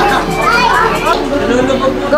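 Young children's high-pitched voices calling out and chattering, with music playing underneath.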